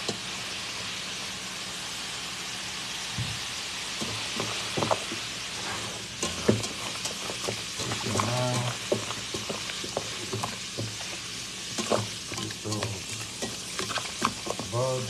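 Baking soda and vinegar fizzing in a stainless steel pot, a steady crackling hiss. From about four seconds in, a hand rubbing and turning broccoli in the foaming liquid adds scattered knocks and clicks against the pot.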